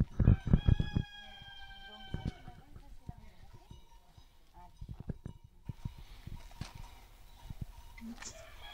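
A rooster crowing once, one long call of about two seconds falling slightly in pitch, with footsteps and knocks on dirt ground under its start.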